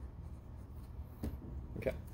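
Marker writing on a whiteboard: short scratching strokes as numbers are written, two of them more distinct, about a second in and near the end.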